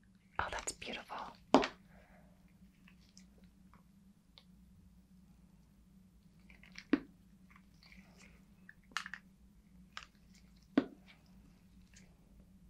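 Gloved hands handling a small plastic alcohol ink bottle: a quick cluster of clicks and crackles about half a second in, then a few single sharp clicks spread through the rest, over a faint steady hum.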